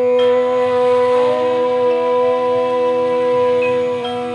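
A woman's voice chanting a long 'Om', held at one steady pitch, over soft background music.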